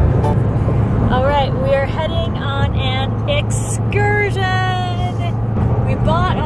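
Steady road and engine noise inside a moving car's cabin at highway speed, with a woman's voice over it.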